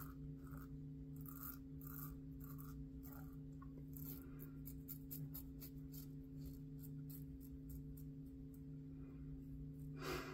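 Merkur 34C double-edge safety razor scraping faintly through upper-lip stubble in many quick short strokes, over a steady low hum.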